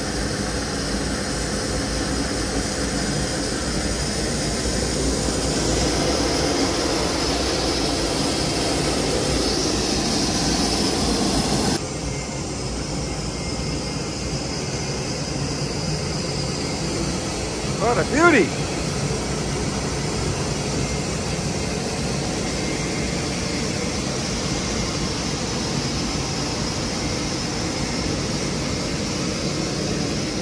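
Steady jet aircraft noise on an airport ramp, its sound changing at a cut about 12 seconds in. Around 18 seconds a brief pitched sound that rises and falls in pitch is the loudest moment.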